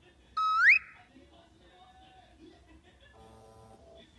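A short, loud whistle-like tone, added in the edit, about half a second in: it holds briefly, then slides sharply upward and cuts off. Near the end, a brief steady chord-like tone.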